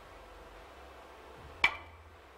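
A single sharp click of a cue tip striking the cue ball in three-cushion carom billiards, about a second and a half in, with a brief ring.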